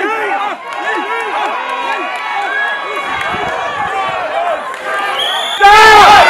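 Crowd of spectators shouting and cheering on tug-of-war teams, with short shouts repeating about two to three times a second like a rhythmic chant. Near the end the sound jumps suddenly to louder, closer crowd cheering.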